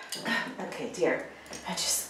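Metal jewellery clinking as a chunky necklace and bracelets are handled, with some brief wordless vocal sounds.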